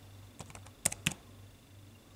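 Laptop keyboard keys being typed: a few scattered keystrokes, with the loudest pair about a second in, over a faint low steady hum.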